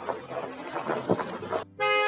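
A car horn sounds once near the end, a loud steady blare of about half a second, over background music. Before it, car tyres crunch over gravel as the car rolls up.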